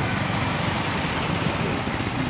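Motorcycle engines running at low speed in slow traffic: a steady engine and road noise.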